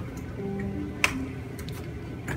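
Background music: a simple melody of short plucked notes, with one sharp click about a second in.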